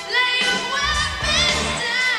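Rock band with a female lead singer, her voice carrying sustained, wavering high notes over the band.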